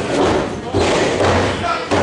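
Wrestlers' bodies hitting the ring canvas: a few loud, sudden thuds from the ring boards, with voices shouting.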